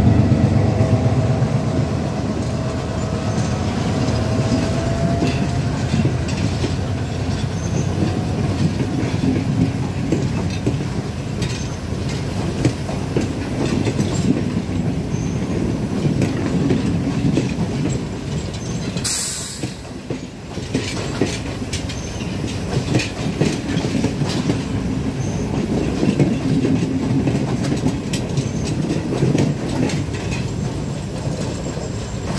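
A diesel-hauled passenger train passing close alongside on the next track, heard from the open window of another moving train. The locomotive is loudest at the start, then its carriages' wheels clatter steadily over the rail joints, with a faint wheel squeal a few seconds in and a brief sharp hiss about two-thirds of the way through.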